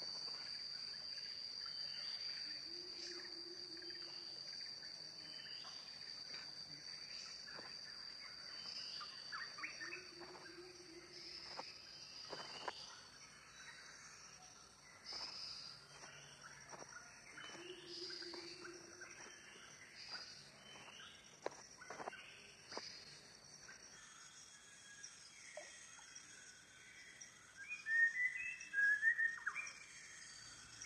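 Tropical forest ambience: a steady high insect drone with scattered short bird chirps and clicks, and a brief low call heard three times. Near the end comes a run of louder bird calls.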